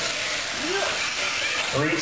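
1/10-scale electric R/C off-road buggies and trucks racing on a dirt track, giving a steady hiss of motors and tyres, with a brief rising-and-falling whine about half a second in.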